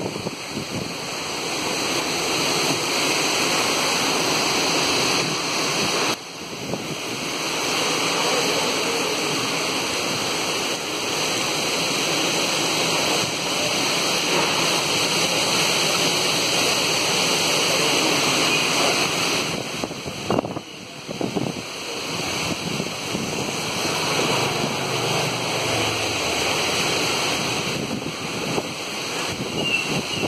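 Cyclone-force wind blowing through coconut palms and buffeting the microphone in a loud, steady rush. It dips briefly about six seconds in and again about twenty seconds in.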